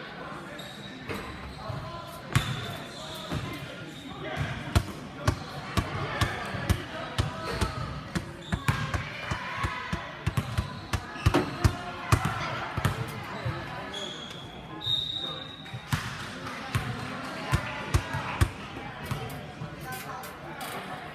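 A basketball bouncing on a hardwood gym floor, with irregular thuds that come every half second or so in places, over the murmur of voices in the gym. Two brief high tones sound about three-quarters of the way through.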